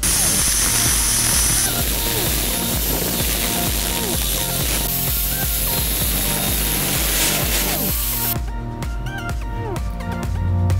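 Angle grinder's cutting disc working through a steel bicycle frame tube, a loud steady grinding hiss that stops about eight seconds in. Electronic dance music with a steady beat plays underneath.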